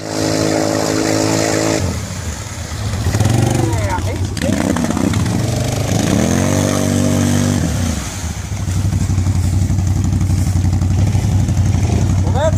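ATV engine working in a deep mud hole. It starts at a steady pitch, is revved up and down several times, then settles into a lower, steady run.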